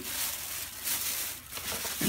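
Thin plastic shopping bag rustling and crinkling as hands rummage through it.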